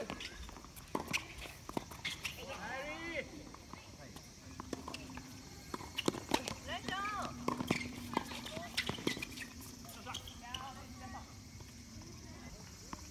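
Tennis doubles rally: a sharp racket-on-ball serve hit, then a run of racket hits and ball bounces, with shoes scuffing on the court. Players' shouts come in short bursts between the hits.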